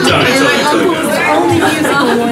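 Several people talking at once: bar-room chatter, with no music playing.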